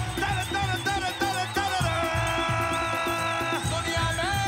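Live band music with a steady drum beat under a singer's wavering melodic line. About halfway through, one long note is held for roughly a second and a half.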